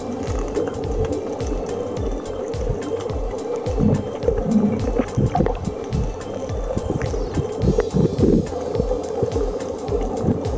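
Muffled underwater sound recorded with the microphone below the surface: a steady low rush of moving water, irregular low rumbles and many scattered sharp clicks and crackles.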